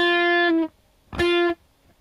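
Electric guitar playing the same single note twice, each cut short after about half a second. It is a pull-off from the sixth to the fifth fret done badly: the second note does not ring out, so only one note is heard.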